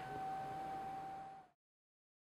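Brother laser printer warming up after being switched on: a faint, steady whine that has just risen in pitch, over a low hum. It cuts off abruptly about one and a half seconds in.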